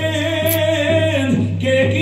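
A man singing a long held note that drops lower after about a second, over a steady low hum.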